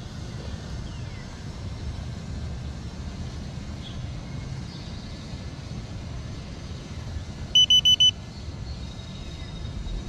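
Steady low outdoor rumble, like wind on the microphone. About three-quarters of the way in it is broken by four quick, high electronic beeps in half a second.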